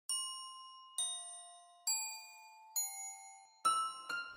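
Intro jingle of five bell-like chime notes, struck about once a second, each ringing out and fading before the next.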